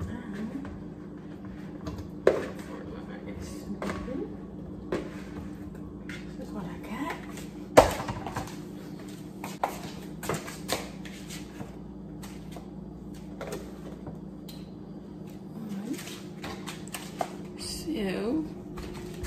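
Kitchen handling sounds: fruit pieces dropping from a plastic bowl into a glass blender jar, then scattered knocks and clatters as the bowl is set down on the counter, the loudest about eight seconds in, over a steady low hum.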